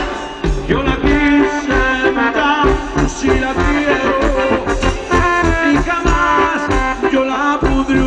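Live band music playing loud over a PA system, with a steady bass beat and a wavering melody line.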